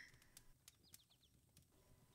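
Near silence: quiet room tone with a few faint clicks.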